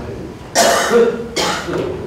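A man clearing his throat with a cough, two rough bursts in quick succession about half a second in.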